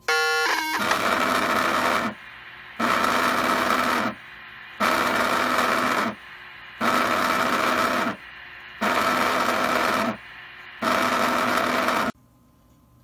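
Long Range Systems restaurant pager going off as it receives a page: a short beep, then six buzzes of about a second and a half each, one every two seconds.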